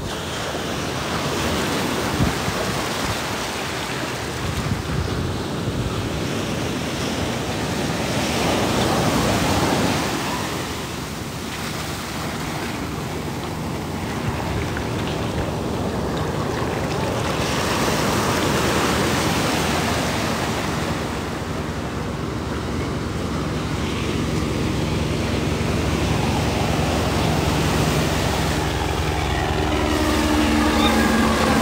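Shallow surf washing in and out over sand close by, swelling and easing every several seconds. Near the end a helicopter's steady engine and rotor hum comes in.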